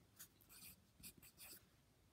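Pencil scratching on notebook paper: a few short, faint writing strokes in the first second and a half, then near silence.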